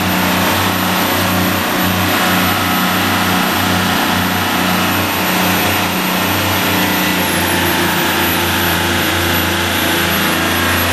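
The 34 Luhrs boat's single inboard diesel engine running steadily, heard close up through an open engine hatch, with a deep, slightly pulsing low note.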